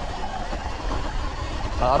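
Wind rumbling on the microphone and knobby tyres on loose dirt and stones as a Sur-Ron Light Bee X electric dirt bike climbs a trail, the rear wheel kicking up stones. It is a steady noise with no clear motor note.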